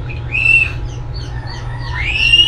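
Birds calling outside: two short arching calls, one about half a second in and another at the end, with faint little chirps between them. A steady low hum runs underneath.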